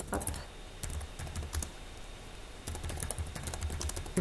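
Typing on a computer keyboard: quick runs of key clicks, with a sparser stretch in the middle before a final burst of keystrokes.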